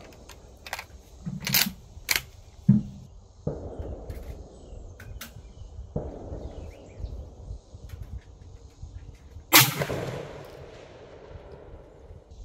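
A 6.5 rifle firing a 44-grain handload fires one loud, sharp shot about nine and a half seconds in, with a short ringing decay after it. Several fainter sharp knocks come in the first few seconds.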